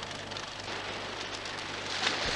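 Steady hiss with a low hum underneath, no voices.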